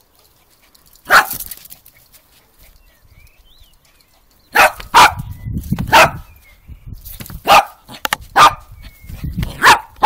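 Small dog barking in single sharp barks, once about a second in and then about six more spaced roughly a second apart in the second half, over the low rumble of the camera being carried at a run.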